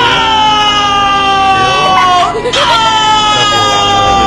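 A high-pitched voice wailing two long, drawn-out "nooo" cries, each about two seconds, each rising briefly and then sliding slowly down in pitch.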